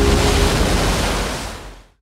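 Ocean surf rushing, with the last held note of the song dying away about half a second in. The surf then fades out to silence near the end.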